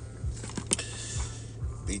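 Light clicks and handling noise, with one sharper click about two-thirds of a second in, over a steady low hum.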